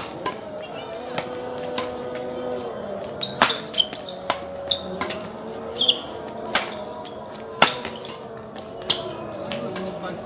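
Badminton rally: a string of sharp racket hits on the shuttlecock, the loudest about three and a half, six and a half and seven and a half seconds in. Insects chirr steadily underneath.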